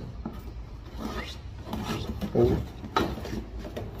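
Box cutter slitting open a cardboard box: an irregular rasping scrape of the blade through the cardboard, with a sharp click about three seconds in.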